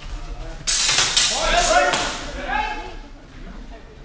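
Swords clashing and landing hits in a fencing exchange: a quick run of several loud strikes from under a second in to about two seconds, with shouts over them.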